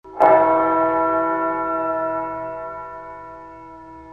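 A single bell struck once, its tone ringing on and slowly dying away over about five seconds.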